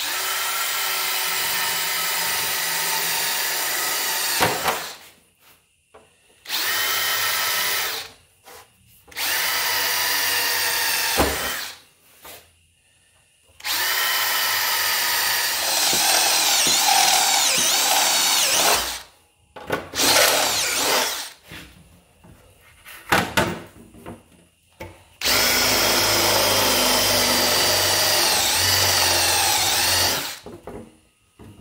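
A DeWalt brushless cordless drill boring holes in a sheet-steel panel with a step drill bit, in five runs of a few seconds each with pauses between holes. The motor whine carries a wavering high tone from the bit cutting the steel.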